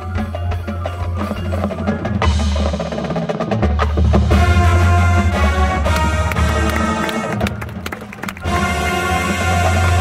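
High school marching band playing its field show: percussion strikes over a sustained low bass. The music thins out briefly about eight seconds in, then comes back louder.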